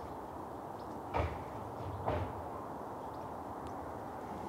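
Two footsteps about a second apart, over a steady low background noise.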